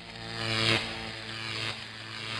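A logo sting: a buzzy, steady-pitched low drone with a hissing layer that swells to its loudest under a second in, then holds and tails off.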